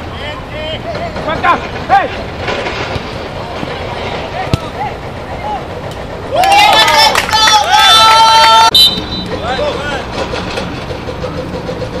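Players' voices shouting on an outdoor football pitch over a steady low background noise, with one loud, long shout from about six to nearly nine seconds in.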